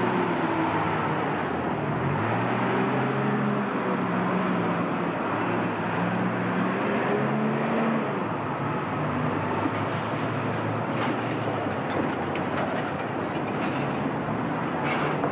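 Diesel engine of a SEPTA transit bus pulling away, its note rising and dropping several times over the first eight seconds as the automatic transmission shifts up, then fading as the bus moves off.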